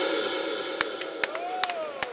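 The last sustained chord of a hardstyle track dying away, while scattered claps and a shout start to come from the crowd.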